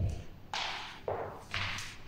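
Barefoot footsteps on a wooden hall floor: a few soft thuds, each with a short scuffing hiss of the foot on the boards.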